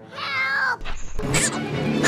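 An Ewok's high-pitched, cat-like squeal, about half a second long and bending in pitch. About a second in come a short thud and a sharp swish.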